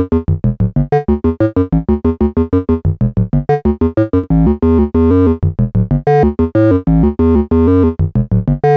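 A modular synthesizer voice, sequenced by a USTA sequencer, plays a quick pitched melody at about five notes a second. For the first half the notes are short and detached (staccato); about halfway through the same melody goes on with long, nearly joined notes. The pitch and rhythm stay the same, and only the gate length changes.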